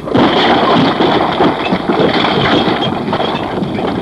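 Dense, steady noise of a volcanic eruption with many small crackles running through it.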